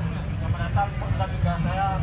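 A man's voice amplified through a handheld megaphone, in short broken phrases. It sounds thin and narrow, as a megaphone horn sounds, over a steady low rumble.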